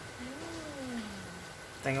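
Pembroke Welsh corgi giving one drawn-out whine that rises slightly and then slides down in pitch, begging for a treat.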